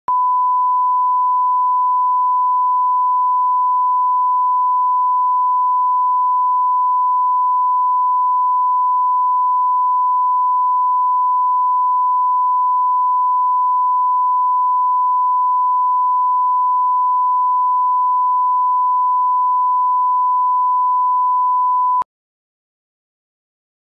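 Steady 1 kHz line-up tone, the pure reference tone that runs with SMPTE colour bars so audio levels can be set. It is one unbroken pitch held dead level, then it cuts off abruptly.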